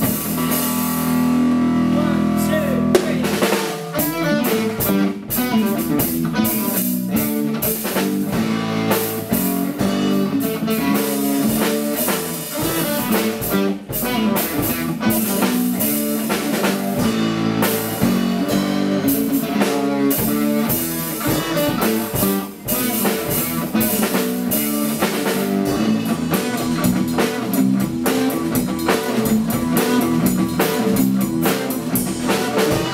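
Electric bass guitar played through an amplifier, holding a low note for the first few seconds and then running into a busy, rhythmic riff, with drums keeping the beat underneath.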